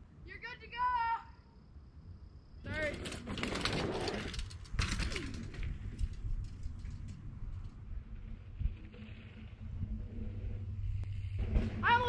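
A short call near the start. Then, from about three seconds in, a mountain bike rides through the dirt jumps with its tyres scrubbing on loose dirt, under more voices. Softer outdoor noise follows.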